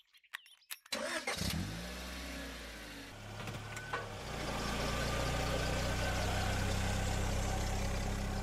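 Hyundai i10 hatchback's petrol engine starting about a second in after a few faint clicks, settling to an idle, then running louder and steady from about four seconds as the car pulls away.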